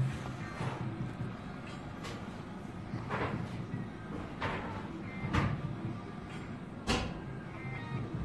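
Merkur 'Rockin' Fruits' video slot machine playing its electronic game sounds: a music bed with a short sweeping stroke every second or so as the reels spin and stop round after round.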